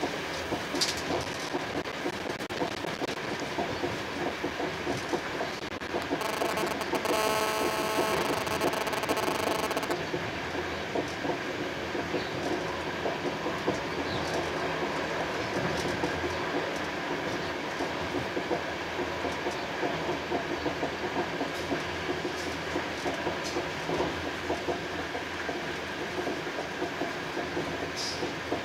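Passenger train running at speed, heard from inside the coach: a steady rumble with the wheels ticking over the track. From about six seconds in, a steady whine of several tones lies over it for about four seconds.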